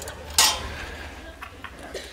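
A steel measuring stick being set down, landing with a single sharp metallic clank about half a second in, followed by a few faint clicks.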